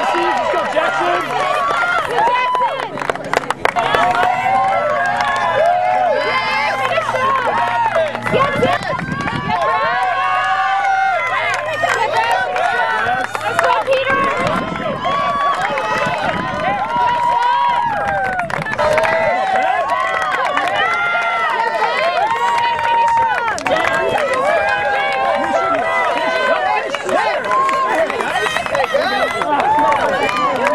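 Crowd of spectators shouting encouragement and cheering runners on, many voices at once, with some clapping. A steady low hum sits underneath for about the first half.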